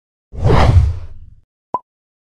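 Logo-reveal sound effect: a loud whoosh starting about a third of a second in and fading over about a second, then a single short high ping near the end.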